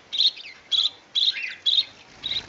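A cricket chirping steadily, about two short chirps a second, with a few faint bird calls behind it.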